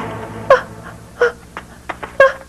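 A woman's short distressed cries, three brief whimpering sobs, each falling in pitch, under the tail of tense background music that fades out.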